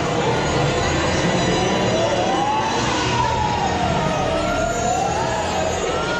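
Eerie haunted-house ride soundtrack: a slow wavering tone that glides up and down like a siren, over a steady dense rumble.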